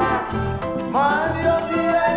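Salsa band music, a full arrangement with a steady rhythm section; about a second in, a many-voiced chord swells in with an upward scoop.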